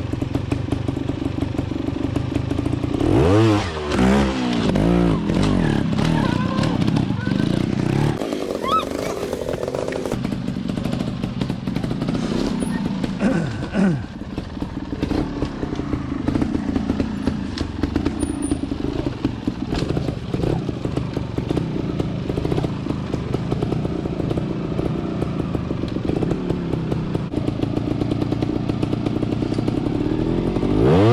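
Trials motorcycle engine running at low speed and blipped in short bursts of throttle while the bike is ridden slowly over rocks. There are a few quick revs a few seconds in, another near the middle, and a hard rev at the very end.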